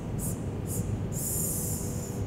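A singer's breath hissing out through the teeth in short pulsed 'S' sounds, about two a second, driven by the diaphragm in a breathing exercise, then one longer hiss near the end. A low steady hum sits underneath.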